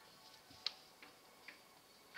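Three light, sharp knocks of wooden slats being handled, the first and loudest about two-thirds of a second in, the next two fainter, about half a second apart.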